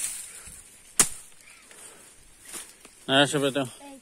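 Sharp blade strikes chopping through grass and brush to clear the ground, one about a second in and a fainter one past the middle. A short burst of a man's voice comes near the end.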